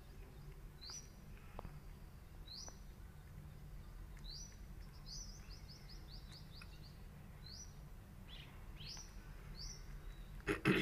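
A small bird chirping faintly, short rising chirps repeated every second or two, with a quick run of chirps in the middle.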